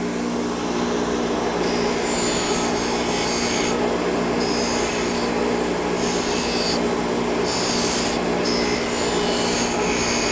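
Bench grinder's wire wheel running with a steady motor hum while an aluminium air-conditioning tube end is pressed against it in repeated passes, a scratchy rasp that comes and goes from about a second and a half in. The wire wheel is cleaning burrs and slag off the cut tube to prepare it for brazing.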